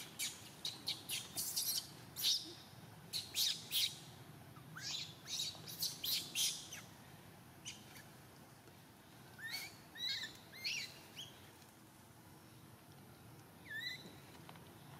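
High-pitched animal chirping: a rapid run of short, sharp calls over the first seven seconds, then a few short rising chirps later on.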